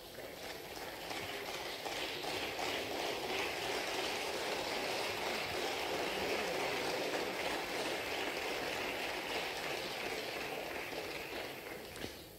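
Applause from senators across a large parliamentary chamber, building over the first couple of seconds, holding steady, then tapering off near the end.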